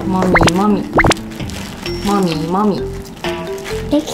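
Light background music with comic sound effects: two quick rising plop-like sweeps, about half a second and a second in, and sliding, wobbling pitched tones that come back twice.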